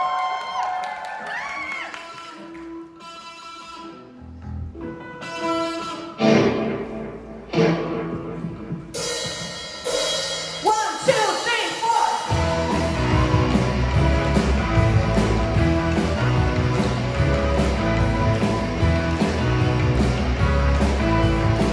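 Live rock band with vocals, electric guitars, bass, keyboard and drum kit starting a song: a few separate sustained chords with gaps at first, then drums and bass come in with a steady beat about twelve seconds in. A voice is heard briefly at the start.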